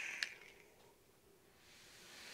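The end of a draw on a Coil Art Mage V2 rebuildable tank: a steady, quiet airy hiss that stops with a small click about a quarter second in, followed by near silence while the vapour is held.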